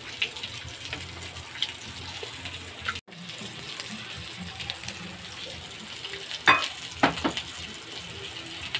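Pork chops sizzling as they fry in a pan, a steady hiss with scattered crackles and a few louder spits between six and seven and a half seconds in. The sound breaks off for an instant about three seconds in.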